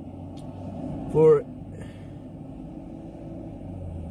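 Steady low rumble inside a car cabin, the sound of a car engine idling, with a short vocal 'uh' from a man about a second in and a couple of faint clicks.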